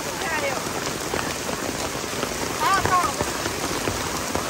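Heavy rain falling on wet pavement and open umbrellas: a steady hiss with many small drop strikes.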